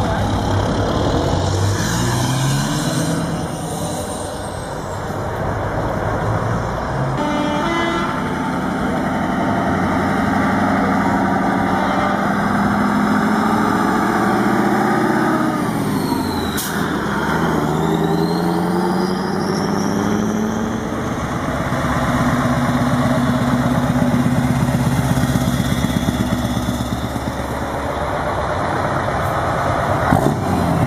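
Heavy truck diesel engines, Scania V8s among them, running and driving past one after another. About halfway through, the engine pitch drops and then climbs again as a truck goes by and pulls away.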